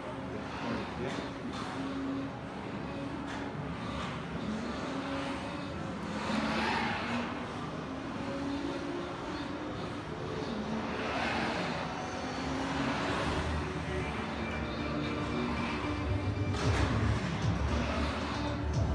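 Audio of a car-driving simulation display: background music mixed with car sounds, with whooshing passes about six and eleven seconds in and a low rumble building near the end. Voices murmur underneath.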